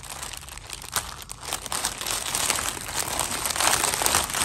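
Clear plastic bag crinkling as hands press and shift the dolls packed inside it, in irregular crackles that grow louder near the end.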